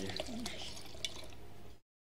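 Red wine being poured from a bottle into a wine glass, a liquid filling and dripping sound with a small click about a second in. The audio cuts out abruptly near the end.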